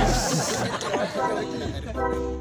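Several people chattering at once, with background music carrying on more quietly; the music's bass drops out shortly after the start.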